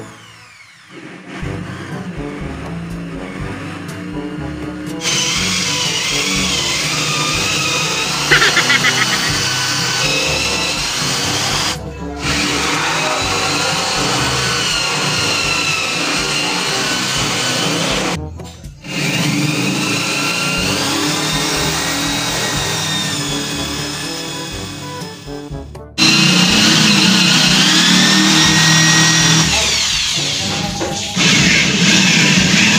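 A cordless power drill boring half-inch holes through the partitions of a wall shelf, in stretches broken by brief gaps, with music playing over it.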